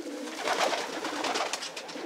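Racing pigeons cooing in a loft, low irregular calls, with a few light clicks and rustles from a bird being handled.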